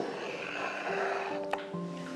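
Soft background music with held, steady tones, and a single sharp click about one and a half seconds in.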